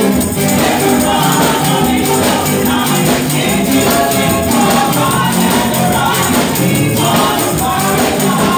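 Women's voices singing a gospel praise song together over band accompaniment, with a tambourine shaking steadily.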